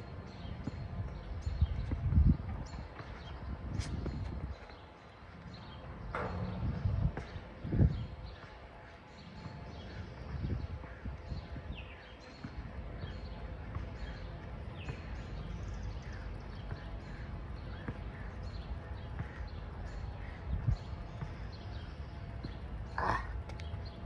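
Outdoor ambience: wind rumbling on the microphone, with scattered faint bird chirps and a few soft thumps.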